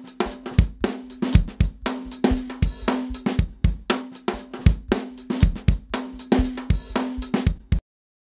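Drum-kit loop of kick, snare, hi-hat and cymbal playing a steady beat while an auto-pan plugin sweeps it from left to right, its level shifting with its position in the stereo field. It stops suddenly just before the end.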